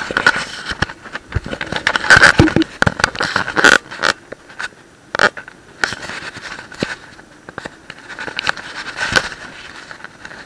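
Handling noise on a small action camera: irregular scraping, rubbing and sharp clicks against the microphone, loudest and densest a couple of seconds in, then thinner.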